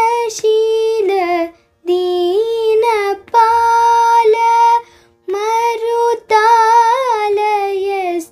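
A young girl singing a Carnatic song in raga Behag, unaccompanied. She sings in held, ornamented phrases that bend in pitch, with short breaks for breath between them.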